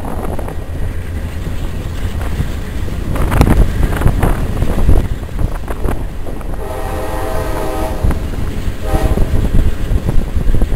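A train running, with steady low rumble and wind noise. There are a few knocks a few seconds in. The train horn sounds for over a second near the middle and again briefly near the end.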